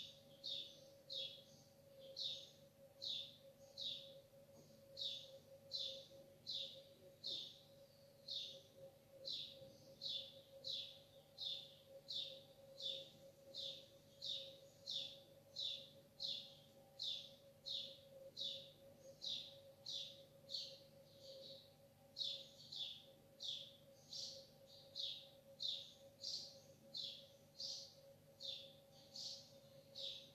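A small bird calling over and over, short high chirps about two a second, faint, over a low steady hum.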